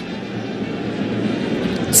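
Stadium crowd noise from a football match: a steady, even din with no distinct cheers or whistles.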